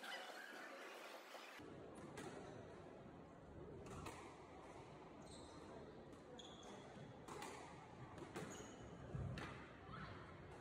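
Faint, scattered knocks of a squash ball on the court, a second or more apart, over low hall noise.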